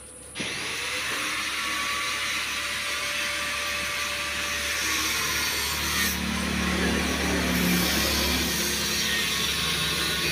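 A power tool starts abruptly about half a second in and runs steadily, a little louder in the second half.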